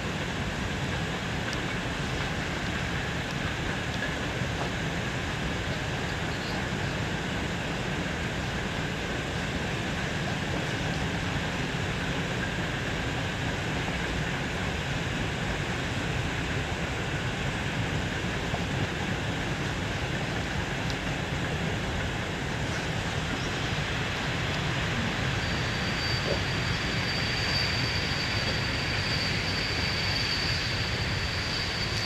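Steady, even rumbling noise of a train running, with no distinct wheel clatter; a faint high whine joins in over the last few seconds.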